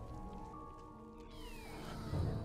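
Quiet film score with sustained held tones, and a short falling whine about one and a half seconds in.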